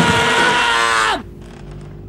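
Punk rock band's loud distorted final chord, its pitch sliding steeply down before the music cuts off suddenly about a second in, leaving a quiet steady low hum.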